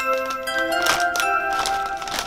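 A chiming sound effect: several bell-like tones that come in one after another and ring on together, with some crinkling of the foil crisp packet.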